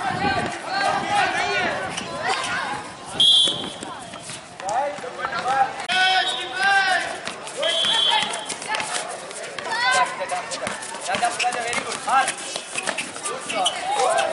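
Players and onlookers shouting and calling out during an outdoor basketball game, with scattered thuds and clicks of play. Two short, shrill, high-pitched blasts sound, the first and loudest about three seconds in and a second near eight seconds.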